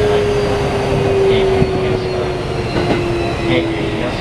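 Mitsubishi IGBT-VVVF inverter and traction motors of a Keikyu 1500 series train, heard inside the passenger car: a steady whine that slowly falls in pitch over the rumble of wheels on rail. The falling pitch is the sign of the train slowing down.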